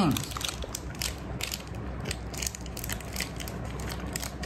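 A person chewing a sticky caramel-like candy close to the microphone: a run of quick, irregular mouth clicks and smacks.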